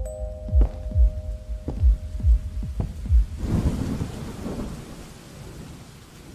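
Soundtrack of low, heartbeat-like thumps under a held tone for about three seconds, then a thunder rumble over falling rain that swells and fades away.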